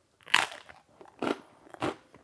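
A bite into a piece of focaccia with a super crunchy baked crust, then chewing: three crisp crunches, the first the loudest.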